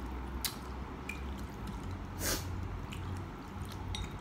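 Close-up eating sounds from a mouthful of instant udon noodles: soft wet mouth clicks and one short slurp about two seconds in.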